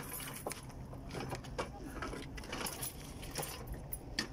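Irregular light clicking and rattling of small hard objects being jostled, over a low steady hum.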